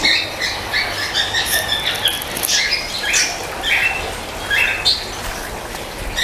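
Small birds chirping in short, bright notes repeated several times a second, over a steady low hum.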